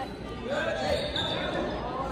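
Basketball game ambience in a gym: players' and spectators' voices echoing around the hall, with a basketball bouncing on the hardwood court.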